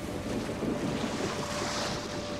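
Ocean surf rushing and churning on the film's soundtrack, a steady roar of water noise with a faint sustained tone beneath it.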